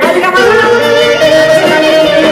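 Live Greek folk (dimotiko) music: a clarinet plays an ornamented melody with long held notes over the band's accompaniment.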